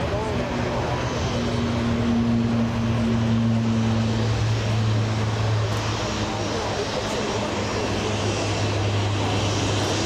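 Jet engines of a Japan Airlines Boeing 787 taxiing past, a steady low hum under a broad rushing noise.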